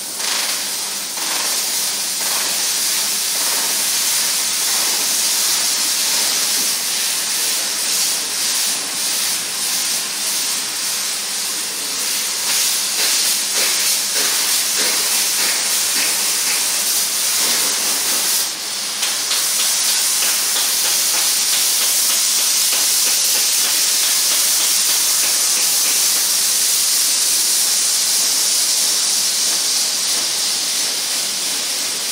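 Fiber laser cutting machine cutting thin sheet metal in flying-cut mode: a steady, loud hiss of assist gas at the cutting head. Through the middle stretch it breaks into a fast flutter of short pulses as it cuts rows of small holes. It dips briefly a little past halfway, then runs on as a smoother steady hiss.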